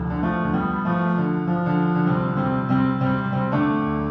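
Electronic keyboard played live: an instrumental passage of sustained chords, changing about every half to two-thirds of a second, with no voice.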